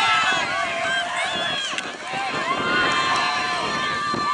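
Sideline spectators shouting and cheering during open rugby play, several voices overlapping. One long drawn-out yell starts about halfway through and is held.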